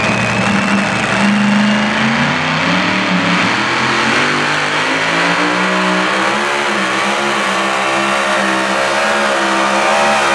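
Mini modified pulling tractor's engine revving hard while hooked to the pulling sled, its pitch climbing over the first few seconds and then wavering as it loads up and takes off with the sled near the end.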